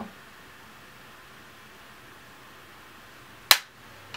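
Quiet room tone, then one sharp click about three and a half seconds in, as makeup is handled at the table.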